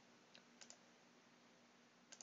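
Near silence with a few faint computer mouse clicks about half a second in.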